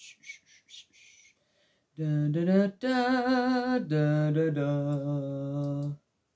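A woman humming a slow tune in long held notes, one of them wavering in pitch, stopping abruptly. Before it come a few faint, short hissing sounds.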